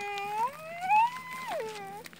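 One long, high vocal call that rises in pitch and then falls back.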